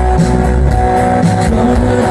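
Rock band playing live, electric guitars, bass and drums with a steady beat, in a passage without singing.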